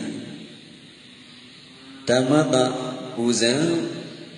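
A Buddhist monk's voice through a microphone, giving a sermon in Burmese. It starts about two seconds in, after a pause.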